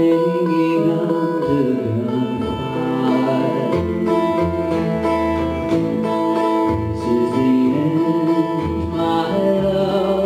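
Live acoustic folk music: a steel-string acoustic guitar strummed, with an upright double bass plucked underneath.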